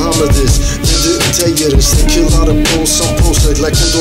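Hip hop track: a drum beat with rapping over it.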